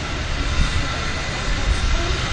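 Steady outdoor background noise: a low rumble with an even hiss over it, no distinct sounds standing out.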